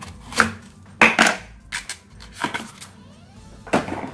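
A kitchen knife cutting through a fresh banana blossom and knocking on a wooden cutting board. About half a dozen sharp, irregular chops; the loudest comes about a second in.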